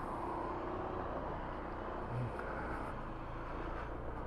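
Honda ADV150 scooter's single-cylinder engine and automatic belt drive running as it pulls away at low speed, a steady, quiet hum heard from the rider's seat.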